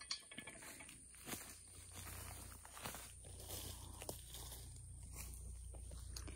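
Faint, scattered crunches and rustles of dry leaf litter and brush underfoot, a few soft cracks spread over several seconds.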